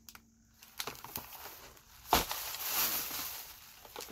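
Handling noise from an open cardboard box of wrapped protein bars being moved and put down, with one sharp knock about two seconds in.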